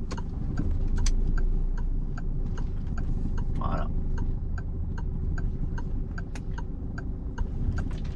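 Car turn-signal indicator ticking steadily, about three ticks a second, over the low hum of the Peugeot's engine running at low speed.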